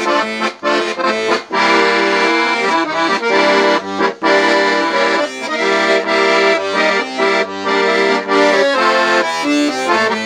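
Beltuna Alpstar 38/96 piano accordion played solo: a melody over held chords, with a few brief breaks in the sound, likely where phrases end or the bellows change direction.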